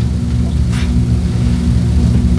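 A loud, steady low hum with several even tones, continuous under the room's sound, with a faint brief rustle under a second in.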